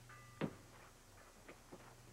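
A few light clicks and knocks, the loudest about half a second in, over a steady low hum.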